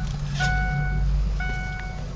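Dashboard warning chime of a 2005 Ford F-350: a steady electronic tone sounding twice, about a second apart. Underneath, the truck's diesel engine runs with a low rumble.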